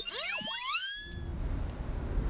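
A cartoon sound effect of several whistle-like tones sliding upward together, over in about a second. About a second in, a low rushing wind of a sandstorm takes over and grows louder.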